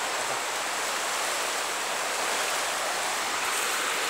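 Steady rushing of a swollen, overflowing river, fast muddy water churning along the bank.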